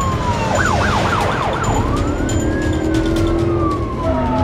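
Police car siren sounding, going from a fast yelp of about four quick up-and-down sweeps into a slower rising and falling wail, over a low rumble of car engines.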